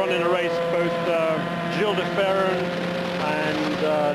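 Onboard sound of a CART Indy car's turbocharged Honda V8 running steadily at low pace-car speed, a constant engine tone.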